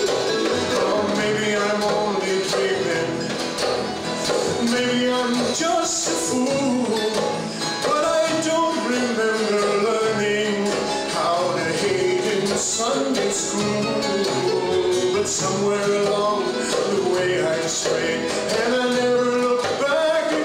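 Live acoustic folk music: an acoustic guitar strummed with a hand-played goblet drum keeping the rhythm, and a man singing over them.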